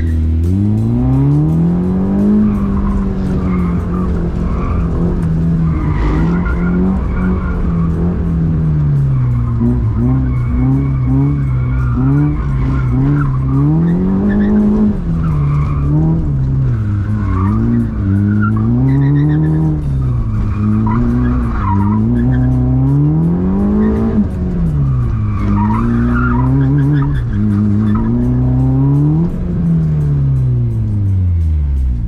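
Honda Brio slalom car's engine heard from inside the cabin, its pitch rising and falling every second or two as the driver accelerates and lifts through the slalom turns. Tyres squeal now and then in the corners.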